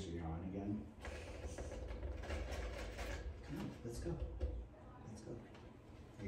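A person's low voice making a few short murmured sounds, with scattered light clicks and scrapes of handling.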